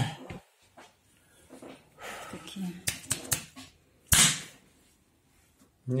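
A few sharp slaps of a gloved hand on a bare chest during percussive massage. A loud, short breathy burst about four seconds in, likely the patient's forced exhale on the strike, is the loudest sound, with faint voice sounds before it.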